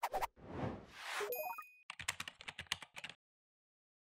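Motion-graphics sound effects: a click, two soft swooshes, the second ending in a rising note and a bright ding. Then a quick run of typing-like clicks that stops just after three seconds in.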